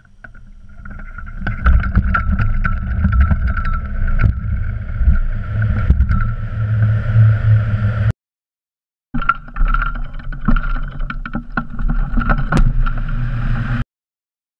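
Wind rushing over the microphone of a camera mounted on a hang glider during a running launch, building up over the first two seconds as the glider gains airspeed, with small knocks and rattles throughout. It cuts out for about a second roughly eight seconds in, then the same loud wind noise returns.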